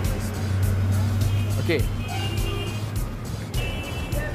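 Street traffic: a motor vehicle's engine running with a steady low hum that fades out a little before three seconds in, under background music.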